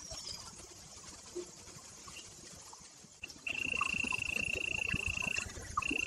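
An insect's steady, high-pitched buzzing call starts abruptly about three and a half seconds in and holds on one pitch, breaking off briefly near the end before resuming.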